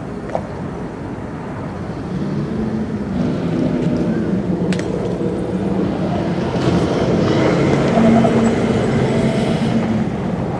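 An armoured vehicle's engine running, growing louder over the first several seconds. A sharp crack comes just after the start and another about five seconds in.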